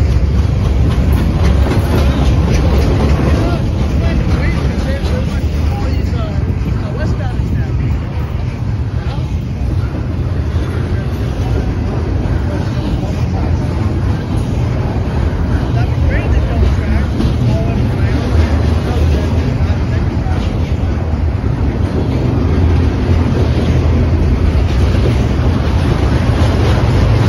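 Norfolk Southern double-stack intermodal freight train rolling past close by: a loud, steady rumble of steel wheels on rail as the container well cars go by.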